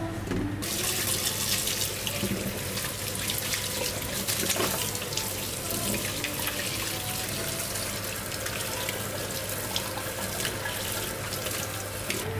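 Kitchen tap running into a stainless-steel sink, with water splashing over vegetables being rinsed by hand. The flow starts just under a second in.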